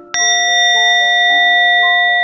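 A single strike of a Buddhist bowl bell just after the start, ringing on and slowly fading. It marks the one prostration made after a Buddha's name is chanted. Soft background music plays beneath it.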